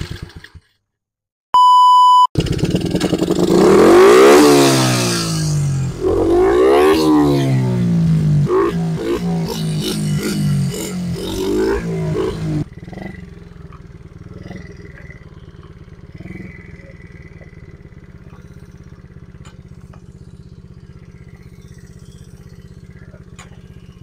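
Small four-stroke single-cylinder engine of a 70cc semi-automatic pit bike, revved up and down in place several times, then dropping to a steady, much quieter idle about halfway through. A short high beep sounds about two seconds in, just before the engine.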